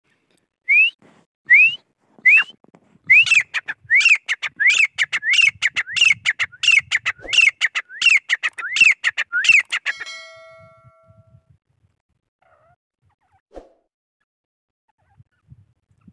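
Grey francolin calling: a series of about thirteen loud, rising whistled notes, each a bit under a second apart, that stops about ten seconds in. A fading ringing tone follows the last note.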